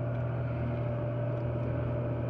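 Dixie Narco 320 soda vending machine, powered up with its door open, giving a steady low hum with a fainter higher tone above it.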